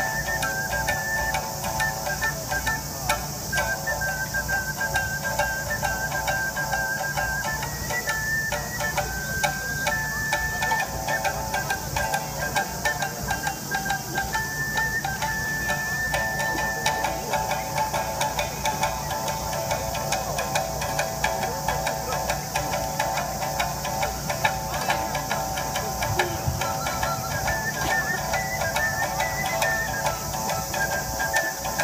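Shamisen and ocarina playing a Japanese folk tune. The ocarina carries a clear single-note melody that steps from note to note over the plucked shamisen, drops out for several seconds past the middle, then comes back.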